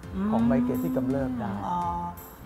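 A voice holding one long, nearly level note for about a second and a half, over background music with steady tones near the end.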